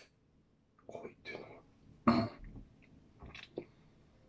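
A man muttering and whispering under his breath in short bursts, with one louder, brief throaty sound about two seconds in.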